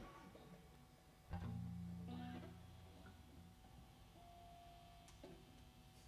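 A single low note plucked on an amplified electric guitar, starting about a second in and fading out over about two seconds, in an otherwise quiet stretch. A faint short higher tone and a small click follow near the end.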